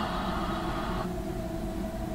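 Steady low hum with hiss, the hiss falling away about a second in.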